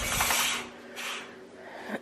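Sheer curtain being pushed aside: a short scraping rustle lasting about half a second, then a fainter one about a second in.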